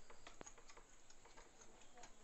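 Faint scattered clicks and ticks of a plastic wall socket outlet, its wire and a screwdriver being handled as the wire is fitted to the terminals, with one sharper click a little under half a second in.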